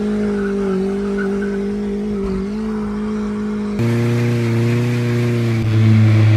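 Mazdaspeed Miata drift car's engine held at steady high revs. A cut about four seconds in brings a deeper, steady engine note.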